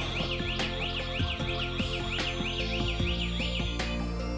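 Wireless indoor alarm siren sounding an electronic warble, a high tone sweeping up and down several times a second, that cuts off suddenly near the end as the panel is disarmed. Background music plays underneath.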